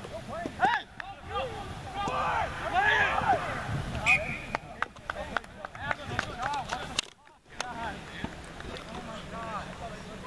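Several people talking and calling out at once, overlapping and indistinct, with a brief lull about seven seconds in.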